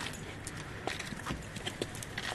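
Hard-soled footsteps on pavement: irregular sharp clicks and taps, a few per second, over a quiet outdoor background.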